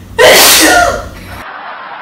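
A monkey sneezing once, loudly and suddenly, about a quarter of a second in, the sneeze dying away within a second.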